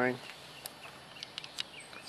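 Quiet outdoor background noise with a few faint, brief high-pitched chirps scattered through it.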